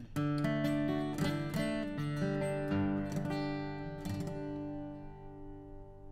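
Acoustic guitar: a short run of picked and strummed chords, with the last chord left to ring and fade away over the final couple of seconds.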